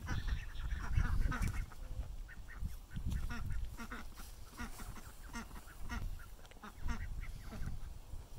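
Backyard poultry calling: many short, irregular calls over a low rumble.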